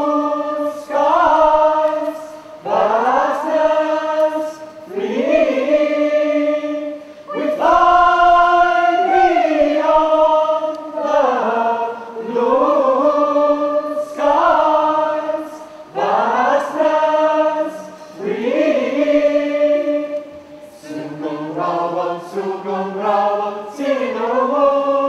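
Unaccompanied group of voices singing a slow song in long held phrases of a few seconds each, the notes sliding into place at the start of each phrase, with short breaths between.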